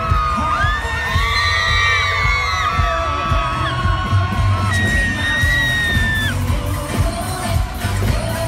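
Loud live pop band music with a pounding bass beat, and fans screaming close by: long, high-pitched screams through the middle.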